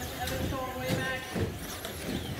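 Several radio-controlled Traxxas Slash short-course trucks racing, their motors whining up and down in pitch as they speed up and brake, with a couple of knocks from the trucks hitting the track or each other.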